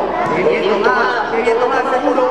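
Speech: voices talking throughout, with no other sound standing out.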